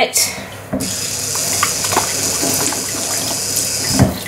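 Kitchen mixer tap turned on about a second in, water running steadily from the pull-out spout into a stainless steel sink, stopping at the end.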